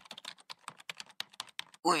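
Computer keyboard typing: a quick, irregular run of key clicks, about eight a second.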